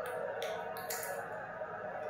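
Sunflower seed shells being cracked open by hand, two sharp clicks in the first second, over the steady background sound of the televised football match.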